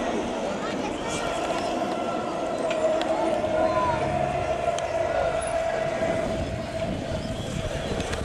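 Hubbub of a large outdoor crowd of cyclists with many distant voices, and a long steady tone sounding through it for several seconds in the middle.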